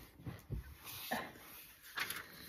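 A woman's short strained grunt ('uh') as she takes the strain of a forearm plank, with a soft low thump about half a second in.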